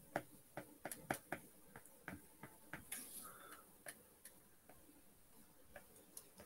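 Faint, irregular clicks of a stylus tip tapping on an iPad's glass screen as letters are written by hand, closely spaced in the first two seconds and more scattered after.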